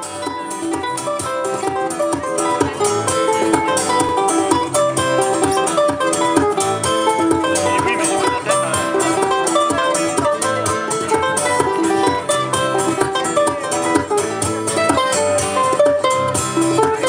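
Two guitars playing a lively instrumental tune together, with many quick plucked notes.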